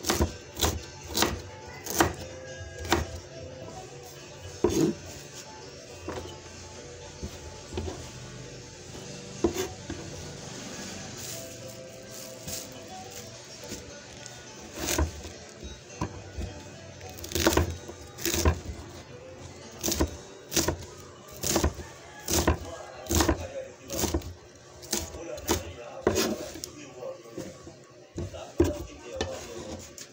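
Kitchen knife chopping vegetables, each stroke a sharp knock on the cutting surface, in irregular runs of quick strokes: sparse through the first half, dense and steady in the second half.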